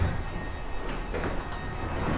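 Steady low rumbling room noise, with a few faint knocks about a second in.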